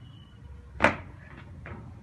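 A single sharp knock a little under a second in, followed by two faint clicks.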